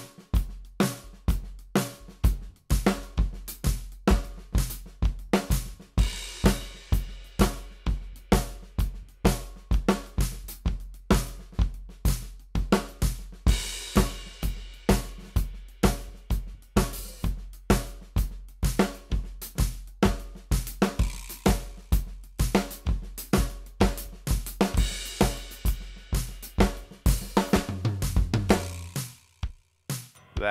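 Drum kit played at a steady tempo on snare, hi-hat, cymbals and bass drum: improvised two-bar phrases built on triplet paradiddle variations, a pattern that works as an implied metric modulation. The playing stops just before the end.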